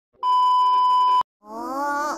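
Television test-card tone: a steady beep at about 1 kHz, held for about a second and cut off sharply. Just before the end, a short pitched voice-like cry follows.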